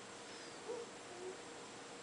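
Two faint, brief hums from a small child's voice, about half a second apart, over quiet room tone.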